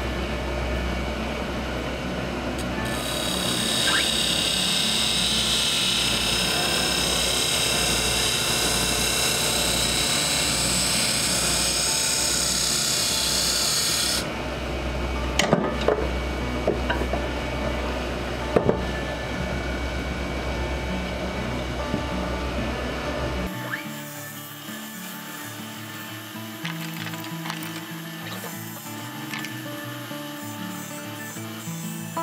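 Wood lathe spinning a hardwood duck-call blank while a hand-held turning tool cuts it. There is a hissing cut for about ten seconds, then lighter scraping with a few sharp clicks. The lathe's hum stops abruptly a few seconds before the end, and music carries on.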